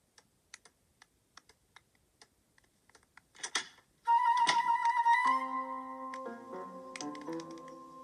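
Soft, irregular keystrokes on a laptop keyboard, about three a second, with one louder short noise near the middle. About four seconds in, a cartoon music cue starts, led by a flute-like melody over sustained chords.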